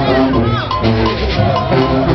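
A Junkanoo band playing in the street: a driving rhythm of drums and cowbells under held horn notes.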